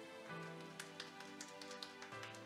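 Quiet background music playing, with a short patter of scattered hand claps from a small group starting about a second in.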